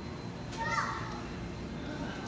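Steady background hum of a large store hall, with a brief high-pitched child's voice calling out about half a second in.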